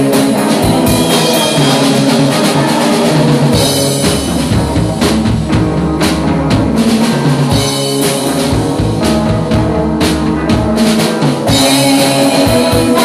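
Live rock band playing: two electric guitars over a drum kit, with steady drum hits driving the beat.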